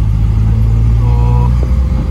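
Engine and road noise of a moving van heard from inside its cabin: a loud, steady low rumble while driving along a paved road.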